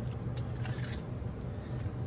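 Paper rustling and rubbing as a scrap of paper is folded and creased down by hand, with a few soft scrapes in the first second. A steady low hum runs underneath.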